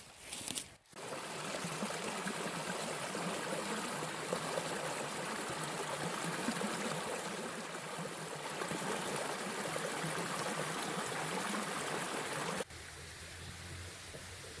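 Small woodland creek running over rocks, a steady rush of water that stops abruptly about a second before the end, leaving only a faint low hum.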